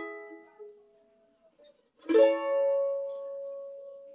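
A chord on an F-style mandolin dies away; about two seconds in, another chord is struck once and left to ring.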